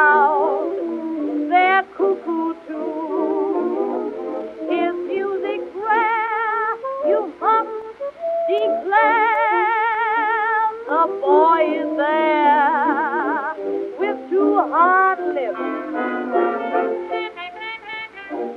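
Instrumental break of an early-1920s jazz dance-band record, a horn playing a hot solo with a quick wavering vibrato and sliding notes over the band.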